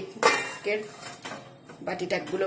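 Perforated steel steamer plate set down on a steel saucepan: one loud metallic clank about a quarter second in, with a short ring and a little clatter after it.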